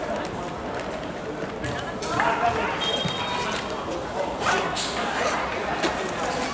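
Distant shouts of footballers calling to each other across an open pitch, over steady outdoor background noise. One call comes about two seconds in and a louder one near five seconds.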